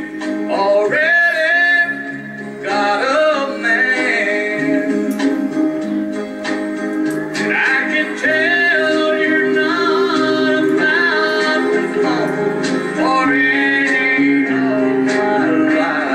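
A man singing a country song into a handheld microphone, his voice gliding and breaking phrase by phrase over backing music with steady held chords.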